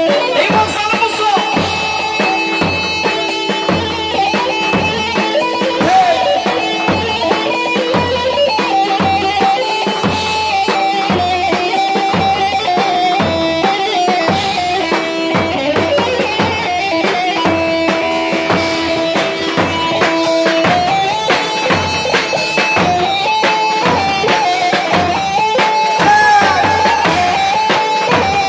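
Live Kurdish halay dance music: an amplified electric bağlama (long-necked saz) leads a stepping melody with held notes over a low drone and a steady drum-kit beat.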